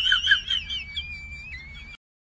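High-pitched whistling: warbling tones at first, then a held steady tone that steps up slightly in pitch about one and a half seconds in. It cuts off abruptly at the end.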